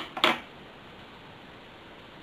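Metal scissors set down on a hard tabletop: one sharp click near the start, then quiet room tone.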